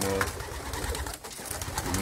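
Racing pigeons' wings clapping and flapping in quick, sharp bursts as the birds take off out of the loft opening, with pigeons cooing inside the loft.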